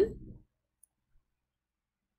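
The last of a spoken phrase fading out in the first half second, then near silence broken only by one or two faint ticks.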